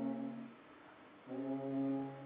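Three alphorns playing together: a long held note dies away about half a second in, and after a short pause they come in again on a new held note.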